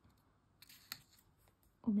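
A finger pressing and smoothing a peel-off sticker onto a paper album page: a faint scratchy rub with a few soft clicks.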